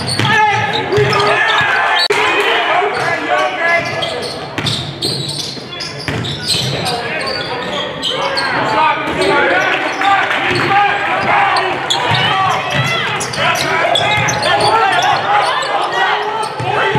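Live game sound of basketball on a hardwood gym court: the ball bouncing and hitting, with players' and spectators' voices echoing in the gymnasium.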